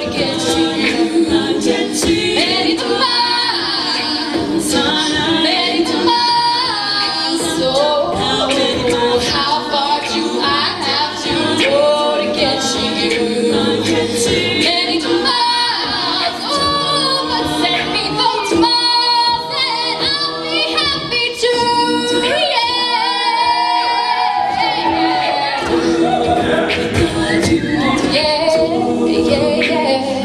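Co-ed a cappella group singing a pop arrangement through handheld microphones. A female lead voice carries the melody over sustained backing chords sung by the rest of the group, with no instruments.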